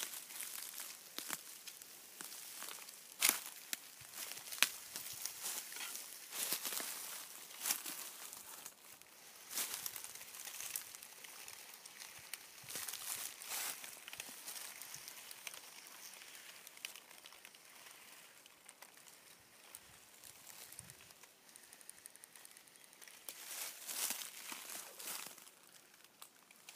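Dry leaf litter rustling and crackling in irregular bursts as a Northern Pacific rattlesnake crawls through it and the person filming follows on foot. The bursts are busiest in the first half and thin out later, with a few more near the end.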